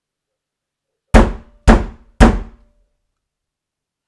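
Three loud knocks on a hard surface about half a second apart, each with a short ringing tail.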